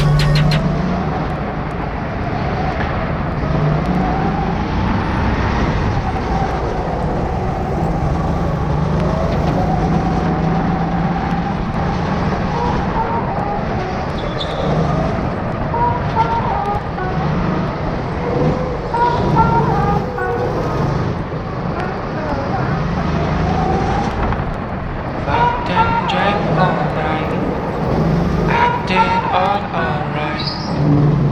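Go-kart running at speed, heard from the driver's seat, its motor pitch rising and falling with speed through the corners.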